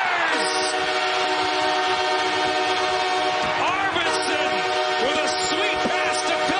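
The Kings' arena goal horn sounding a sustained chord of several pitches over a cheering crowd, signalling a home-team goal; the chord shifts a little about four seconds in.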